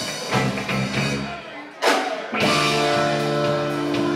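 Live funk-rock band playing, with electric guitars, bass and drum kit. The music drops away for a moment, then comes back in on a sudden loud accent about two seconds in, followed by held guitar and bass chords.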